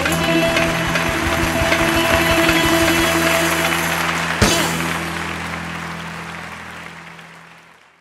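Live band playing the closing bars of a Greek laïko song: a held final chord over repeated low strikes, one sharp hit about four and a half seconds in, then the music dies away and fades out.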